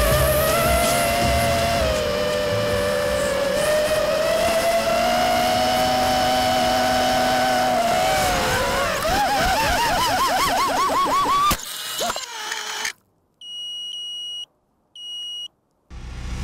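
Racing quadcopter's brushless motors (2500KV, three-blade props) whining in flight, the pitch drifting with throttle and then surging up and down in quick throttle punches before cutting off suddenly. Two short high beeps follow.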